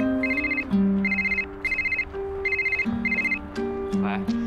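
Mobile phone ringing: short high electronic beeps repeating in quick pairs, stopping shortly before the call is answered. Background music with plucked notes plays underneath.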